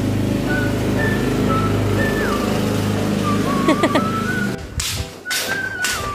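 Ride-on lawn mower engine running steadily, with a high whistled tune over it. The engine stops abruptly about four and a half seconds in, leaving a quieter room with a few sharp knocks while the whistled tune goes on.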